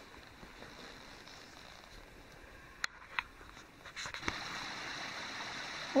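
Steady rushing of a mountain stream, faint at first and stepping up to a louder level about four seconds in. Two sharp clicks, about half a second apart, come just before the rise.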